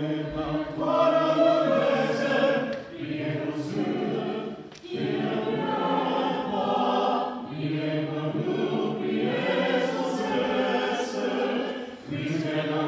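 Choir singing unaccompanied in sustained chords, in phrases broken by short breaths about three, five and seven and a half seconds in.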